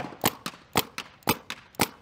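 Paintball marker firing paintballs in a quick string of single shots, about four a second, each a sharp pop.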